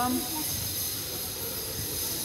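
A steady high-pitched hiss with several faint steady high tones in it, with a brief voice at the very start.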